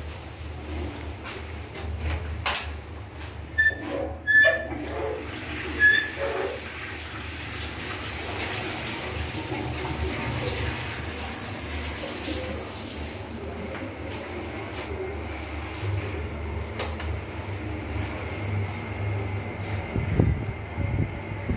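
Midea wall-mounted oscillating fan running with a steady low hum, while a toilet flush sends a rush of water through for several seconds in the middle, fading out afterwards. Before the flush come a few sharp knocks and short squeaks, the loudest sounds here.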